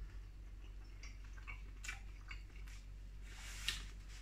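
A person chewing a mouthful of hot dog sausage and bun, faintly, with a few scattered soft wet mouth clicks.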